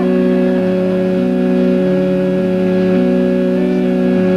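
Live organ music: a sustained drone chord held steady, with one lower note repeatedly dropping out and coming back in.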